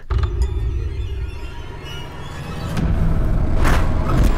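Horror film trailer soundtrack: ominous music over a deep low rumble, building in loudness through the second half, with a sudden sharp accent near the end.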